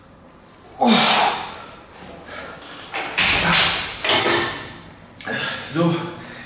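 A man's forceful, voiced exhalations with effort while lifting heavy dumbbells, a loud one about a second in and more a couple of seconds later, with a dull thud about three seconds in as the dumbbells are set down.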